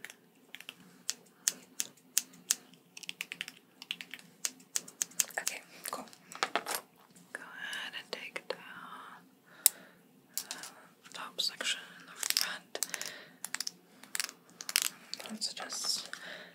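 Rapid, irregular snips and clicks of haircut scissors and hair tools handled close to the microphone.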